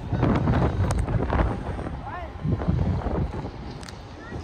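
Wind buffeting the microphone in a low, uneven rumble, with distant, indistinct shouts from players and spectators at an outdoor youth soccer game.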